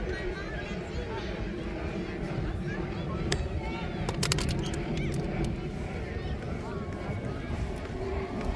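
Indistinct voices of spectators and young players on an open field, over a steady low rumble of wind on the microphone. A few sharp clicks come about three to four and a half seconds in.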